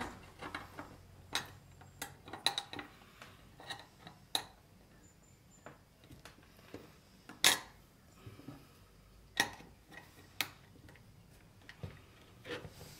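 Small metal parts of an old rusty box lock clicking and clinking against each other and the steel case as they are fitted in by hand: irregular sharp clicks, the loudest about halfway through.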